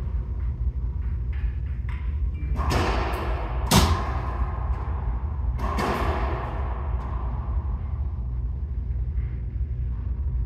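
A racquetball being struck and hitting the court walls during a rally: a few sharp cracks, the loudest about four seconds in, each ringing out in the enclosed court's echo.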